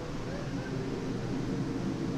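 Steady background hubbub: faint voices with an even noise beneath them, no single sound standing out.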